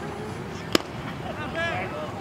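A single sharp crack on the baseball field about three-quarters of a second in, much the loudest thing here, over a murmur of spectators' voices; a voice calls out briefly near the end.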